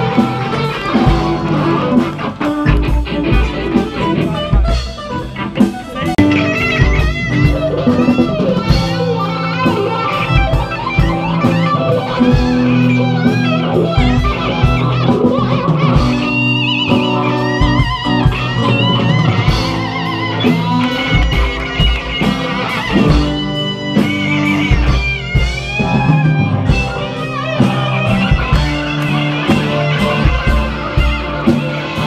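Live rock band playing an instrumental passage: an electric guitar lead with bending, wavering notes over a drum kit.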